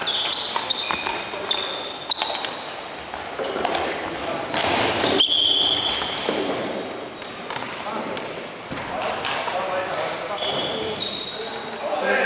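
Indoor floor-hockey play in a reverberant sports hall: sneakers squeak sharply on the floor, sticks click against the ball, and players' voices call out in the background.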